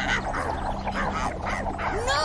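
A crowd of cartoon monkeys chattering in quick, overlapping short calls over steady background music.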